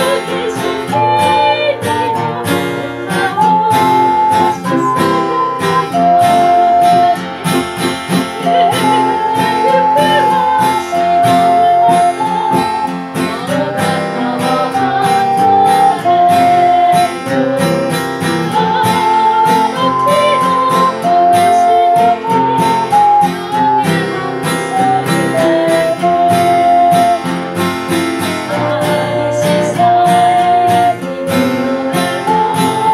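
Ocarina playing a melody of long, clear held notes over a steady plucked-string accompaniment, with voices singing along.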